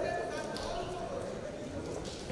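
Unclear voices calling out around a boxing ring, with dull thuds from the boxers' footwork and punches on the ring canvas.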